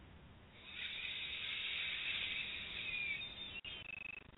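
A soft, deep in-breath close to the microphone, a steady airy hiss lasting about three seconds, taken as the first breath of a guided meditation.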